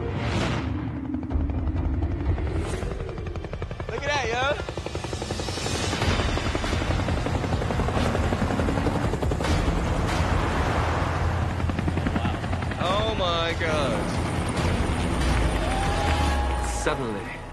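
Helicopters flying in low and close, their rotors chopping rapidly over a deep rumble. People shout about four seconds in and again near thirteen seconds.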